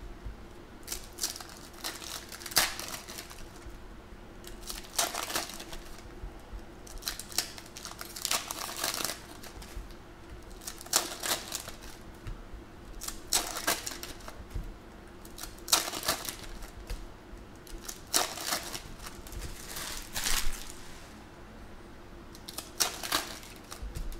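Foil trading-card pack wrappers crinkling and tearing open, in short bursts every second or two, with cards being slid and set down between them.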